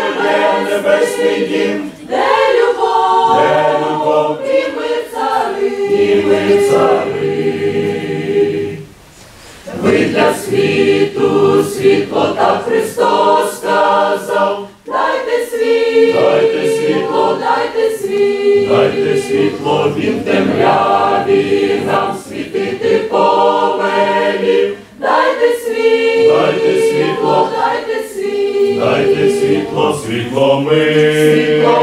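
Mixed church choir of men's and women's voices singing a hymn together, in sustained phrases with a brief pause about nine seconds in.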